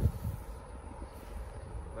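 Low, uneven outdoor rumble with a faint hiss above it and no steady tone.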